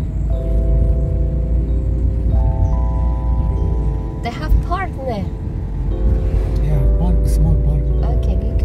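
Low, steady road rumble of a car driving, heard from inside the cabin, under music of slow, sustained chords that change every second or two. A short wavering voice-like sound comes about halfway.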